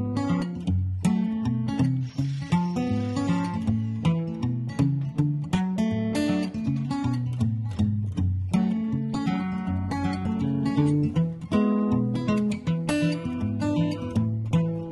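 Background music: acoustic guitar, plucked and strummed in a steady rhythm.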